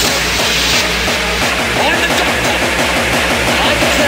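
Hardcore (gabber) electronic dance track playing: a fast, steady kick drum beat drives it, with synth sounds layered above.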